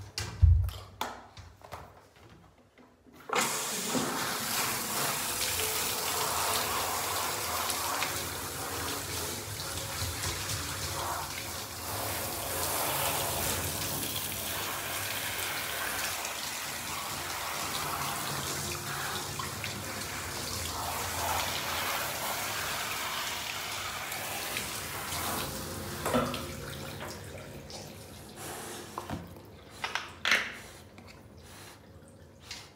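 A short knock just after the start. Then, from about three seconds in, a handheld bathtub shower runs steadily, spraying water onto a dog's coat, and tapers off near the end.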